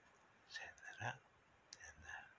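A man's soft whispered voice, a few quiet murmured sounds, with one short sharp click near the end.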